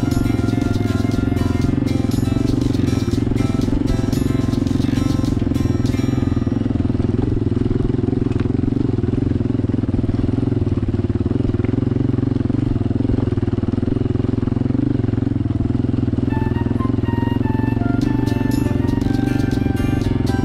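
Honda XLR200R's single-cylinder four-stroke engine running steadily as the dirt bike rides down a rough gravel road. Background music plays over it for the first several seconds and comes back near the end.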